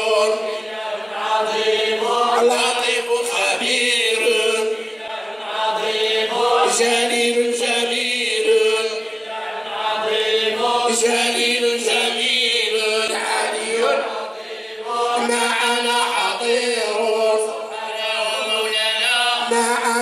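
Men's voices chanting Islamic devotional praise in unison, unaccompanied, in long held melodic lines. Short breaks for breath come about every four to five seconds.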